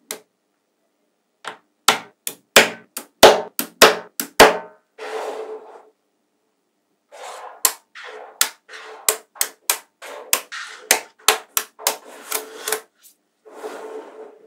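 Small neodymium magnetic balls snapping together by hand, a quick run of sharp clicks, with softer rattling as rows of balls shift and slide between them. A short quiet pause comes about halfway, then the clicking resumes.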